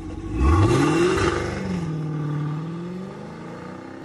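Car engine revved once: its pitch climbs sharply about a third of a second in and is loudest for the next second, then eases back down and settles to a steady idle.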